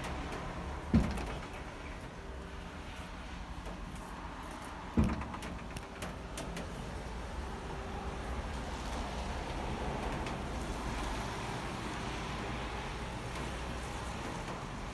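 Steady low hum of distant city traffic, with two sudden dull thumps, one about a second in and another about five seconds in.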